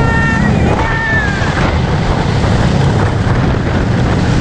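Wooden roller coaster train (The Beast) running along its track with a loud, steady rumble and wind rushing over the microphone. A rider gives two short high cries that slide downward in the first second and a half.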